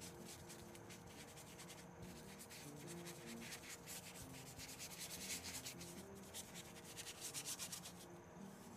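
Paintbrush scrubbing acrylic paint onto a canvas in short, quick strokes, faint and scratchy. The strokes come faster and a little louder in the second half.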